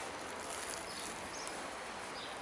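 Steady outdoor background hiss with a few faint, brief bird chirps.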